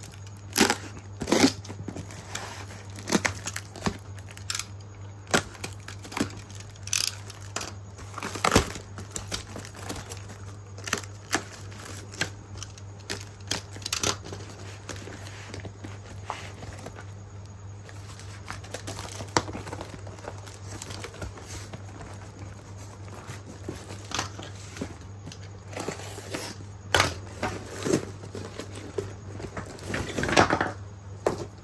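A taped brown paper parcel being slit with a utility knife and torn open by hand: irregular rips, crinkling and rustling of the paper wrapping. A steady low hum runs underneath.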